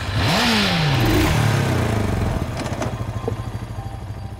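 Motorcycle engines revving and pulling away in an echoing underground garage. One engine note climbs sharply just after the start, then falls away over about a second over a rush of noise, and the sound settles to a steady low hum that fades toward the end.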